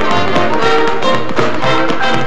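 Orchestral dance music playing, with the quick sharp taps of tap-dance steps on a hard floor running along with it.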